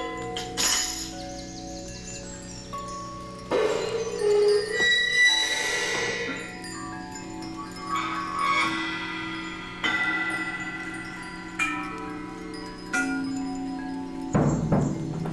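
Solo percussion: metal percussion struck with drumsticks in sparse, separate strokes every second or two, each leaving pitched metallic ringing that hangs on and overlaps the next, with a denser, louder group of strokes in the middle.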